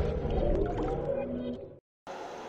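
The tail of a TV channel's electronic logo jingle: sustained synth tones and a swooshing wash fading away, then cutting to silence just before the end.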